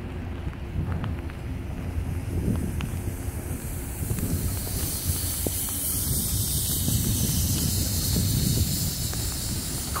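Freight cars of a Norfolk Southern train rolling past: a steady low rumble of wheels on rail with a few faint clicks, and a hiss that builds about halfway through.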